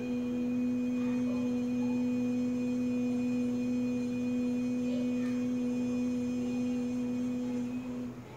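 A woman's voice toning a single long, steady note on an 'ee' vowel, held without a break and tailing off at the end.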